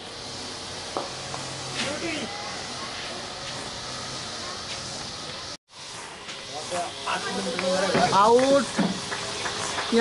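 Steady hiss with several people's voices calling and shouting across the field, faint in the first half and louder in the last few seconds; a faint knock comes about a second in.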